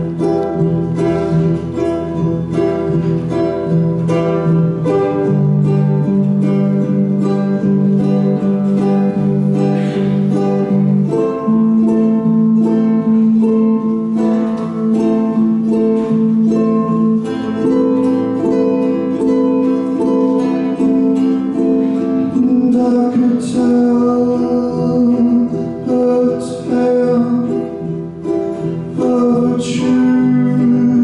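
A slow live acoustic song: a ukulele and an acoustic guitar play together. A male voice sings long-held low notes over them, changing pitch every few seconds.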